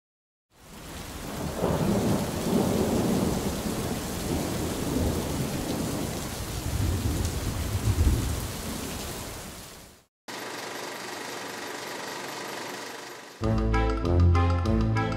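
Thunderstorm sound effect: steady rain with two swells of rolling thunder, the louder one about eight seconds in, fading in just after the start and cutting off about ten seconds in. Music begins near the end.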